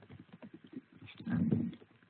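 Computer keyboard typing: a string of quick, irregular key clicks as a line of code is entered. A brief murmur of a voice comes partway through.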